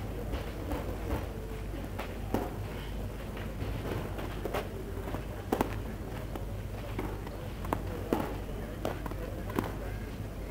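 Background chatter of spectators at an outdoor tennis court between points, over a steady low hum, with scattered sharp knocks and clicks at irregular moments, the loudest a quick double knock about midway.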